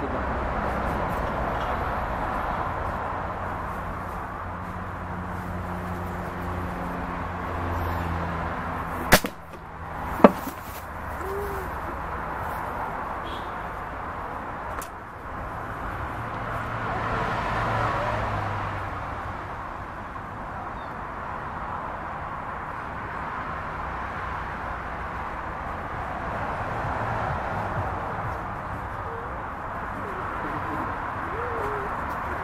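A gas-piston break-barrel air rifle, a Hatsan 125 Sniper Vortex, fires once about nine seconds in, with a second sharp crack about a second later. Steady outdoor background sound with a low hum runs under it.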